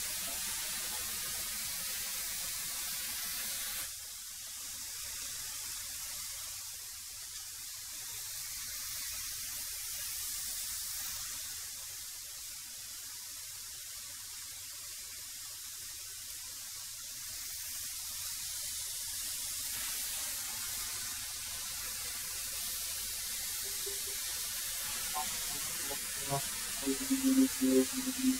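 A 13-inch benchtop thickness planer running with a steady hissing whir as semi-rough boards are fed through it. The sound turns thinner and hissier from about four seconds in and settles back at about twenty seconds.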